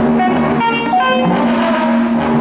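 Mixed improvising ensemble of horns, electric guitars, keyboards, strings and drums playing a dense, clashing mass of overlapping short and held notes over one steady sustained low note.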